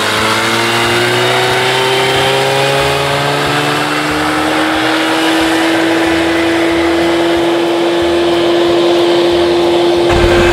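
Evinrude outboard motor on a small fishing boat pulling away under throttle. Its pitch climbs over the first few seconds, then holds steady as the boat runs out across the lake.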